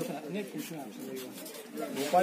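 Indistinct talk of several men's voices close by, no clear words.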